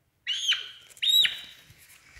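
A hen giving two short, high-pitched squawks under a second apart, each ending with a drop in pitch. They are the protest calls of a hen held down while her swollen eye is treated.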